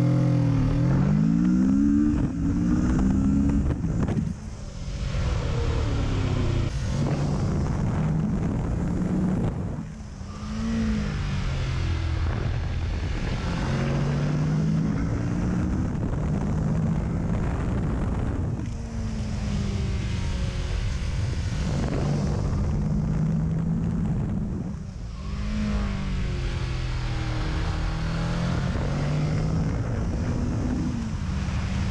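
Kawasaki Ninja 650's 649 cc parallel-twin engine heard onboard while riding, its note rising in pitch under acceleration and falling back about four times as the revs drop.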